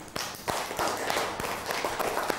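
A class of schoolchildren applauding, breaking out suddenly right at the start as many hands clap at once.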